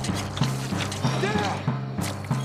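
Film soundtrack music with a steady, pulsing bass note repeating about three times a second. A short voice cuts in a little over a second in.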